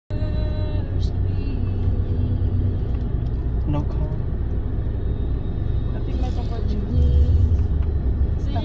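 Low, steady rumble of engine and road noise heard inside a moving car's cabin, swelling a little near the end.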